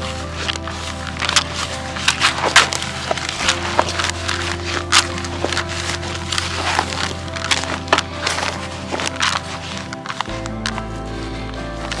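Background music with a steady bass line, over frequent short crackling, squelching clicks of hands kneading damp groundbait in a plastic bucket.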